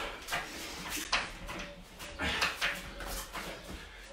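A man's short, hard breaths and the swish of his judo jacket, a burst about every second, as he repeats tai otoshi throw entries barefoot on foam mats.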